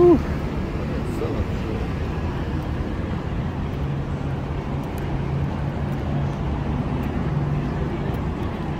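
Steady traffic noise from a busy city street, with snatches of passers-by's voices; a short voice sound is heard right at the start.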